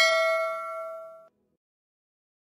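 Notification-bell chime sound effect of a YouTube subscribe animation, a bright ding with several ringing overtones fading away, then cut off abruptly a little over a second in.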